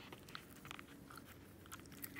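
Faint, scattered wet clicks of a small dog licking and smacking its lips.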